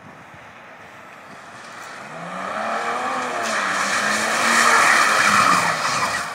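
Mercedes-Benz W210 300 TD estate's 3.0-litre straight-six diesel revving hard as the car drifts on wet paving, its pitch rising and wavering as it comes closer. A loud rush of tyres sliding through standing water builds over it, loudest near the end.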